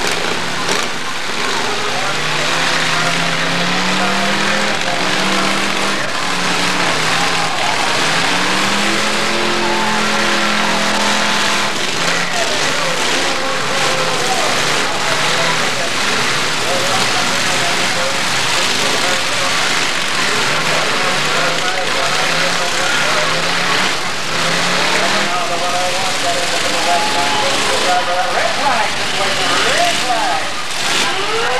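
Several V8 demolition-derby cars' engines revving hard, pitch rising and falling over and over as the cars ram and push against each other, with occasional knocks of metal hitting metal.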